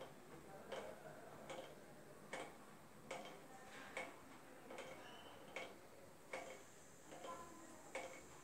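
Faint, regular ticking, about five ticks every four seconds, over near-silent room tone.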